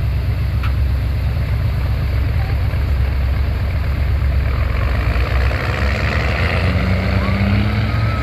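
Monster truck engine running with a heavy, steady low rumble, its pitch rising over the last couple of seconds as it accelerates away. Voices are heard faintly near the end.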